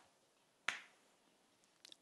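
Chalk striking a chalkboard while drawing a box: one sharp click about two thirds of a second in and two faint ticks near the end, otherwise near silence.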